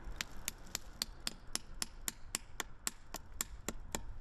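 Hammer tapping a plastic sap spout into a tap hole in a maple trunk: about fifteen quick, even, light strikes, roughly four a second.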